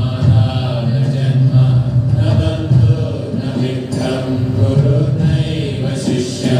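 A mantra or devotional chant sung over held keyboard tones from a Roland XP-30 synthesizer, continuous and steady.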